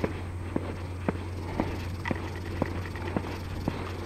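Footsteps going down concrete stairs, about two steps a second in an even rhythm, over a steady low rumble.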